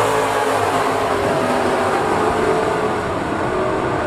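A pack of late model street stock cars on a dirt oval under green-flag racing, many V8 engines at full throttle together, loud and steady.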